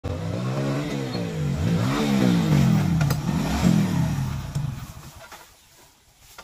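Motorcycle engine running, its pitch rising and falling several times as the throttle is worked, then dying away shortly before the end as the bike comes to a stop.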